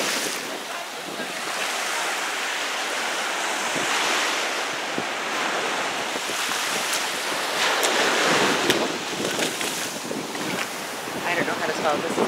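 Ocean surf washing in on a sandy beach, swelling louder a few times, with wind buffeting the microphone.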